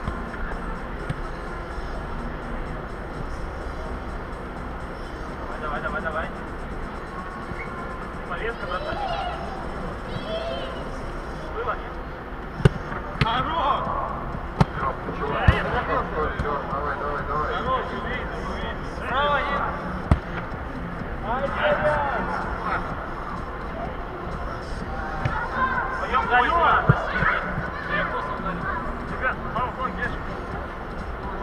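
Footballers' shouts and calls across a large inflated sports dome, with a few sharp ball kicks, the loudest a little before halfway and around halfway, over a steady low rumble.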